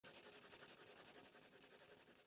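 Faint sound effect of an animated intro title: a rapid, even fluttering hiss, high in pitch, slowly fading.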